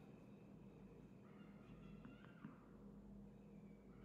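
Near silence: room tone with a steady low hum, a faint brief high sound a little over a second in, and a soft click just after two seconds.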